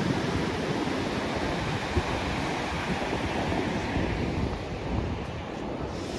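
Rough sea surf breaking and washing onto the shore below a cliff, a steady rushing of white water, with gusty wind buffeting the microphone.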